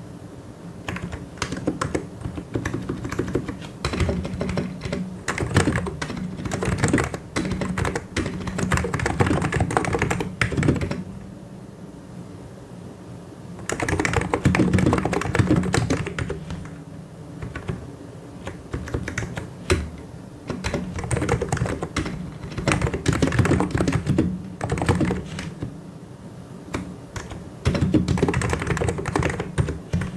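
Typing on a mechanical keyboard with Korean-legend keycaps: fast runs of key clicks in bursts, broken by brief pauses about eleven seconds in and again near the end.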